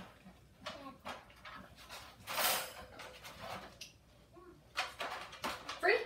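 Large dog shifting about inside a wire crate: scattered soft sounds, with a longer rustle about two and a half seconds in.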